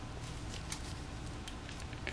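Faint steady room hiss and hum with a few light clicks, twice a little apart, from a small hand tool pressing on a camera's door hinge pin.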